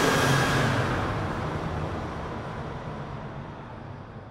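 Intro sound effect: a rushing whoosh with a low rumble underneath, loudest at the start and slowly fading away.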